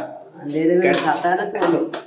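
People talking in a small kitchen, with dishes and utensils clinking about a second in.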